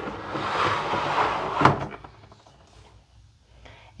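Sliding basket drawer of a pull-out under-sink organizer being pushed back in: a sliding noise for about a second and a half, ending in a knock as it reaches its stop.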